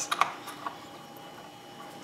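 A few light, sharp clicks in the first second, from small things being handled at the tying bench, then quiet room tone with a faint steady hum.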